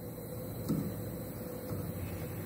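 Steady low background hum, with a faint click about two-thirds of a second in.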